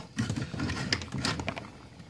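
Light metallic clicks and scraping as the bolt carrier of an AK-pattern shotgun is worked back and forth in its steel receiver, with a couple of sharp clicks about a second in.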